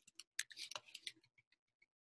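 Faint, scattered clicks of computer keyboard keys being typed, several in the first second, then a few softer ticks.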